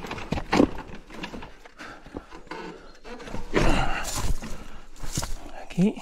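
Electric mountain bike creeping over rock: irregular knocks and clatter as the tyres and frame bump over stones, with the rider's breathing and a short voiced sound near the end.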